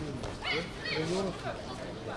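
Voices shouting short calls in a sports hall, two of them rising sharply in pitch about half a second and a second in.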